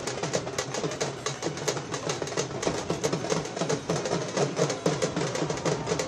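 Rajasthani folk drummers playing frame drums and a dhol in a fast, busy beat, with a wavering pitched part over the drumming.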